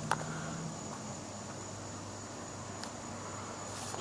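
Quiet outdoor ambience: a steady high drone of insects, crickets, over a faint low hum, with a light click just after the start and another near the end.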